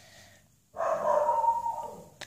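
A dog barking: one drawn-out, pitched bark lasting about a second, starting a little before the middle.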